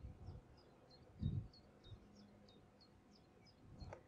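Faint outdoor birdsong: a small bird repeating one short, high, slightly falling note a little over twice a second. A brief low rumble comes a little over a second in.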